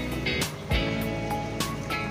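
Background music with sustained chords and drum hits.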